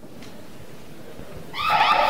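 An electronic alarm siren starts loudly about three-quarters of the way in, wailing in rapid up-and-down sweeps. Before it there is only a low hiss of background noise.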